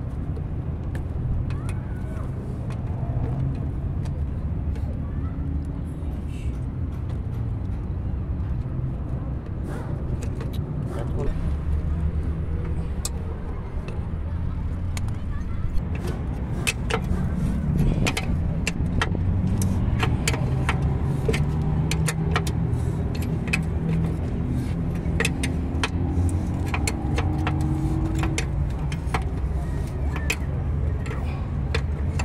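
Steady low engine rumble, with frequent light metallic clicks and taps from hand tools working at a rear drum-brake hub's axle nut, the clicks coming thicker in the second half.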